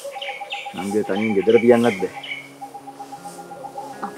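A short line of spoken Sinhala dialogue with birds chirping in the background. After the speech stops, about two seconds in, a faint low steady drone carries on under the birdsong.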